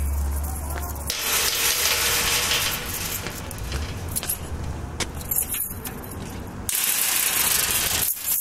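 A low hum for about the first second, then loud rushing noise for about four seconds, a quieter stretch, and the rushing noise again from near the end.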